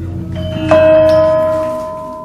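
Javanese kenong, bronze pot gongs struck with a padded mallet: two strikes, the second louder, its pitched ringing tone fading slowly. A lower ringing is sustained underneath.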